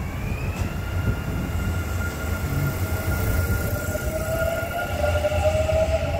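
Kintetsu 9020-series electric train pulling away and picking up speed past the platform. A whine from its inverter-driven motors climbs over the first second and then holds, and a lower tone rises near the end, all over a steady rumble of wheels on the rails.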